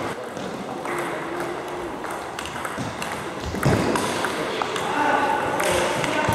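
Table tennis ball clicking off the bats and the table in a series of sharp ticks as a point is served and played.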